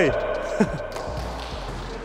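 Voices echoing in a large sports hall as a shouted team cheer dies away, with a short call from one player about half a second in.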